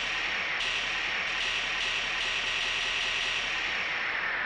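Synthesized white-noise sweep, the kind of effect used in eurodance tracks and DJ transitions: a hiss with faint tones slowly falling in pitch, pulsing slightly about every 0.4 s, with no drum beat under it.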